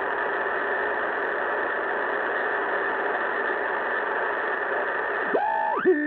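Drake R-4B ham radio receiver on the 20 m band playing a steady hiss of atmospheric static while its tuning knob is turned. Near the end a whistling tone slides down and then up in pitch as the tuning crosses a signal.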